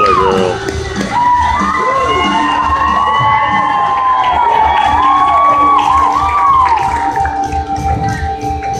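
Audience cheering, with children's high shouts and whoops, over music with a steady beat.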